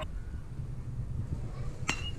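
Metal baseball bat striking a pitched ball near the end: a single sharp ping with a brief ringing tone, over a low steady rumble.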